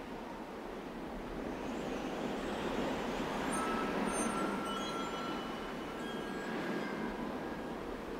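Ambient electronic music: a dense, noisy drone that swells toward the middle, with thin high held tones coming in about three and a half seconds in and fading out near the end.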